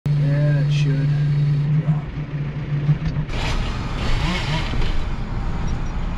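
Tractor engine running steadily, heard from inside the cab, as a loud even drone for about the first three seconds. Then the drone gives way to a rougher, noisier rushing sound.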